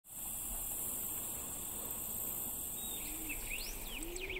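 Night ambience: a steady, high-pitched chorus of crickets. From about three seconds in a bird joins with short whistled calls that glide up and down, and a low call is heard near the end.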